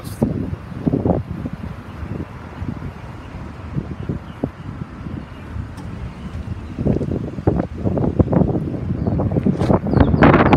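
Wind buffeting the microphone: an uneven low rumble with gusty swells that grows stronger about seven seconds in.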